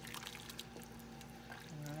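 Wooden spoon stirring watery palm-nut sauce in a stainless steel pot: faint wet sloshing of the liquid, with scattered light clicks and scrapes of the spoon.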